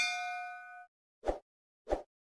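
Notification-bell 'ding' sound effect: a bright bell strike with several ringing tones that fades out within a second, followed by two short soft clicks.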